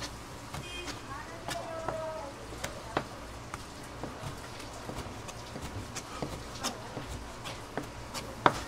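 Kitchen knife slicing raw stingray wing into strips on a cutting board: irregular sharp clicks and taps of the blade on the board.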